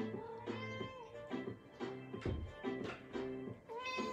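A domestic cat meowing twice, each call drawn out and falling away at the end, while it wants to be let in through a door. The meows sound over background music with a plucked, guitar-like pattern.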